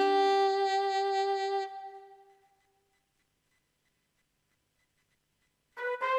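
A Yamaha Genos keyboard's alto sax voice holding one note that fades away within about two and a half seconds. Then comes near silence, and near the end a few quick notes start on a brass voice.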